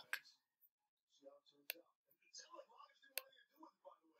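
Near silence with two faint computer mouse clicks about a second and a half apart, and a faint murmur of voice between them.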